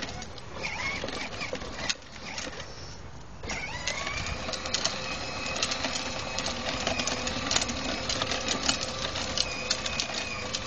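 Electric gear motor of a battery-powered toy ride-on quad whirring as it drives along a concrete sidewalk, with its plastic wheels clicking and rattling over the surface. The whir drops away briefly about two seconds in and comes back steadily about a second and a half later.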